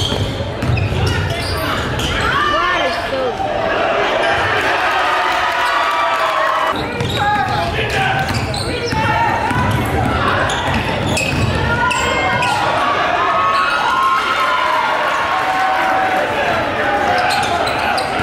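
Live court sound of a basketball game in a gymnasium: the ball bouncing on the hardwood floor again and again, under a steady mix of players' and spectators' voices in the hall.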